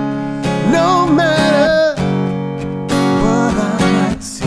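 Acoustic guitar strummed steadily in chords, with a man's voice singing a wordless, wavering melody line over it twice.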